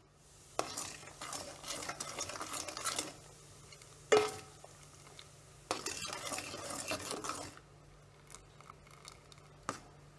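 Steel spoon stirring melted jaggery syrup in a metal pot, scraping around the pot in two spells. About four seconds in, the spoon strikes the pot once with a sharp ringing clink, the loudest sound; a lighter tap comes near the end.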